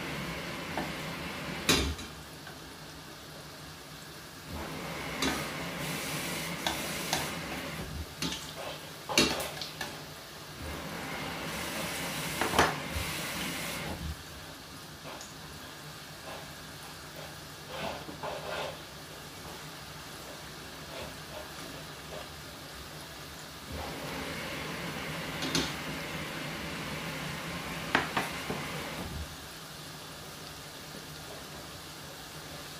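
Festival dumplings deep-frying in a stainless steel pot of oil, a steady sizzle that swells and eases in stretches. A few sharp knocks stand out over it.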